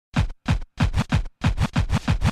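Record scratching opening a hip hop track: a quick run of short scratch strokes, about four a second, with brief silences between them.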